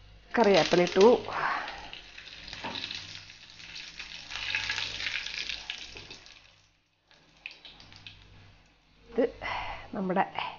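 Green and dried red chillies sizzling in hot oil in a frying pan, the tempering for pineapple pachadi. The sizzle starts loudly about half a second in, runs as a steady hiss, breaks off briefly about two-thirds through and comes back quieter.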